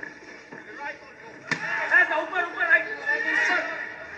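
Human voices, not in clear words, with a sharp knock about a second and a half in.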